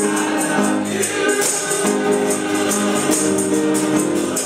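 Gospel choir singing held chords over organ accompaniment, with a tambourine shaken and struck on a steady beat.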